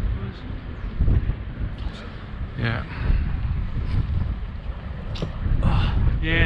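Wind buffeting the microphone, a steady low rumble that swells and dips, with brief faint voices about halfway through and near the end.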